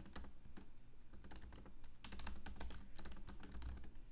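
Typing on a computer keyboard: scattered keystrokes at first, then a quicker run of keys from about two seconds in.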